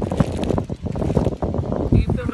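Wind buffeting a phone's microphone: a loud, uneven low rumble with irregular gusts.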